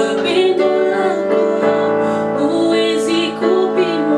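A woman singing a slow gospel song over a Yamaha portable keyboard playing sustained piano-like chords.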